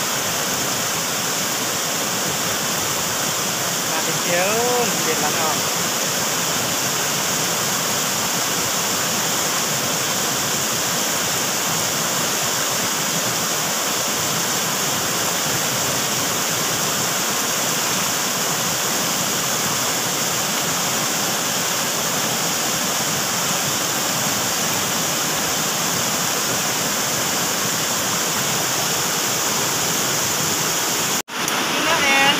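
Shallow, fast-flowing stream rushing steadily around the feet, a continuous even wash of water.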